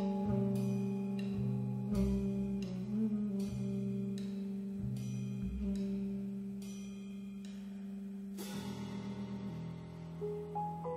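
Live jazz quartet of piano, alto saxophone, double bass and drums playing a slow passage: a long held low tone over bass notes and light, evenly spaced cymbal strokes. The harmony shifts about eight and a half seconds in.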